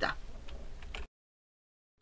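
Faint room hum with a few small clicks, then dead digital silence from about halfway through where the recording has been cut.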